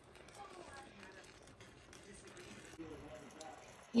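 A faint voice talking in the background over low room noise, with a few soft clicks.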